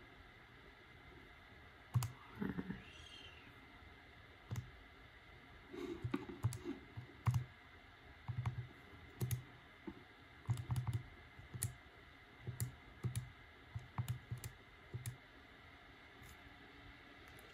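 Keys of a TI-84 Plus CE graphing calculator being pressed one after another: a run of small, irregularly spaced clicks starting about two seconds in, as an inverse-normal calculation is keyed in.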